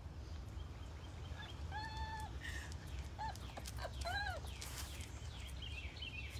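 A dog whining: one held whine about two seconds in, then four short rising-and-falling cries. Small falling bird chirps repeat faintly near the start and end.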